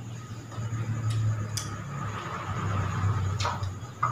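A few soft clicks of plates and glasses as people eat by hand, over a steady low hum.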